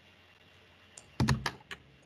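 A short run of sharp clicks at a computer, like keystrokes on a keyboard, starting about a second in after a quiet pause.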